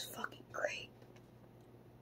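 A person's brief breathy whispering in the first second, then only a faint steady low hum.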